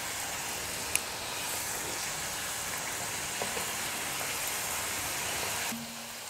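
Thattu vadai (flat rice-flour discs) deep-frying in hot oil in a kadai: a steady sizzle, with a single click about a second in, and a slight drop in level near the end.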